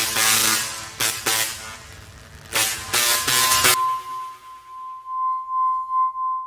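Edited-in music sting or sound effect: three loud crashing hits in the first four seconds, then a steady high pure tone that pulses in loudness.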